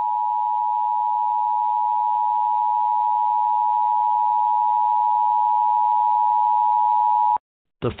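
Emergency Alert System attention signal: a steady, harsh two-note tone held for about seven seconds, cutting off abruptly near the end. It marks the start of an emergency alert broadcast.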